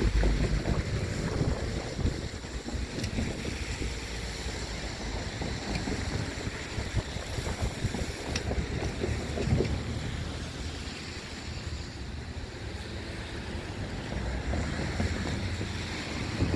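Gusty wind on the microphone over the low rumble of the tail end of a freight train of empty cars rolling away along the track.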